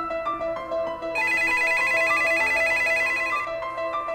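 Telephone ringing: a rapid warbling trill lasting about two seconds, starting about a second in, over a soft beat of repeating keyboard-like notes. The call goes unanswered.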